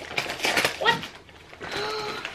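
Christmas wrapping paper being torn and crinkled off a present in quick, rough rips during the first second.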